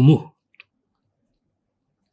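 A man's reading voice ends a Japanese sentence, then near silence with a single faint small click about half a second in.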